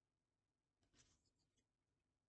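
Near silence, with one faint, brief rustle a little less than a second in as a round cardboard oracle card is picked up and handled.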